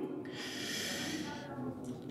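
A man drawing a long breath in close to the microphone: a soft, airy hiss lasting about a second.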